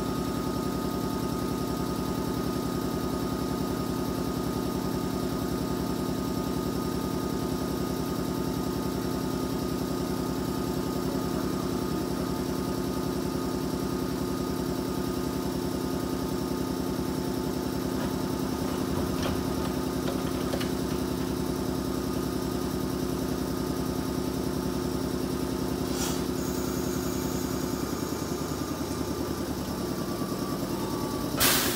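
JR 415 series electric multiple unit standing at a platform, its on-board equipment giving a steady hum with several held tones. About four seconds before the end there is a sharp click and a short high-pitched tone as the doors close, and the hum changes.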